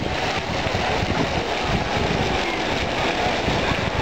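Steady outdoor ambience of a busy swimming pool: a wash of far-off bathers' voices under an even noise, with wind rumbling on the microphone.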